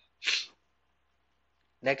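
A single short, breathy burst from the narrator's mouth, about a third of a second long, with no voiced tone. The spoken word "next" starts near the end.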